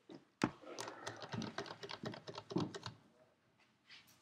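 Quiet, rapid, irregular light clicks and taps for about two and a half seconds, after one sharper click near the start.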